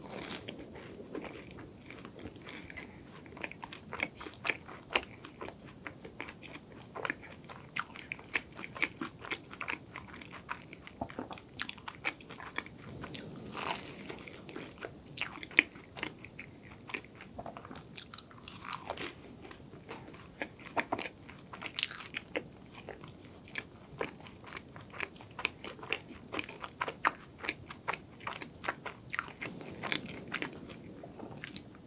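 Close-miked biting and chewing of a crisp, flaky mini croissant: a continuous, irregular run of sharp crunches and crackles as the layered pastry breaks up.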